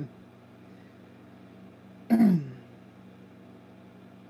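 A man clears his throat once, about two seconds in, a short rough sound that drops in pitch, over a faint steady hum.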